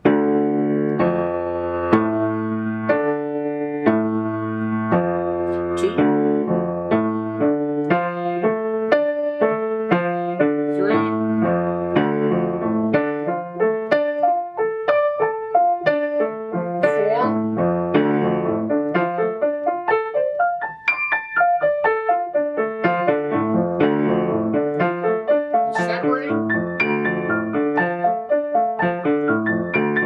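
Grand piano playing a D minor arpeggio (D, F, A) with both hands, up and down the keyboard. It starts at about one note a second and moves on to quicker notes and fast rising and falling runs over several octaves.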